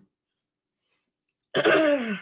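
After about a second and a half of near silence, a woman clears her throat once, loudly, the pitch falling as she does.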